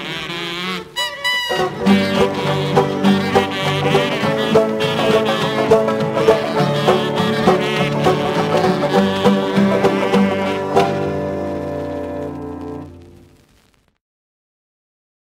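A 1970s French jug band recording: banjos and other plucked strings playing a bouncy tune. It closes on a long held chord that fades away near the end.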